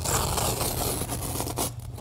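A carpet knife slicing through carpet backing: a steady rasping scrape that breaks into a few short scratches near the end.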